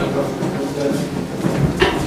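Several people chatting at once, an unclear murmur of conversation with no single voice standing out.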